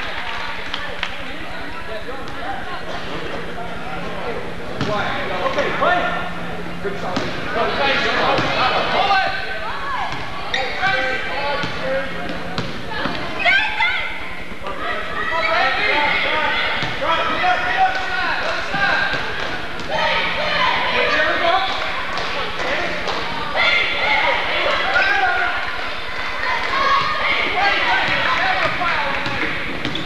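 A basketball being dribbled and bouncing on a hardwood gym floor during live play, with crowd shouts and chatter throughout.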